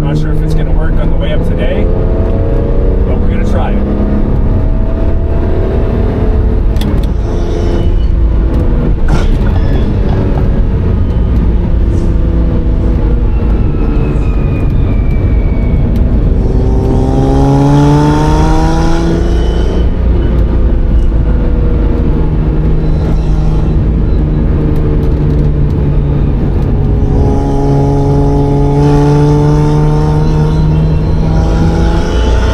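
Ferrari Testarossa's flat-12 engine heard from inside the cabin while driving, over steady road noise. The engine pulls up through the revs about halfway through, holds steady, and climbs again near the end.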